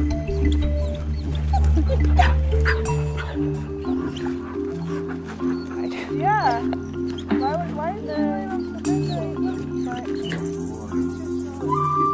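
Background music of steady, held, repeating notes. Over it, about halfway through, a few high whines that rise and fall, from grey wolf pups whining as they greet an adult wolf.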